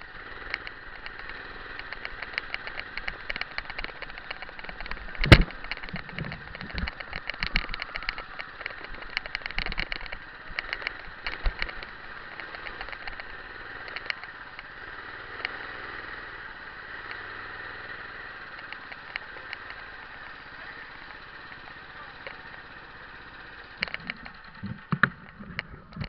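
Go-kart engine running at low speed, with many small clicks and rattles and one sharp knock about five seconds in.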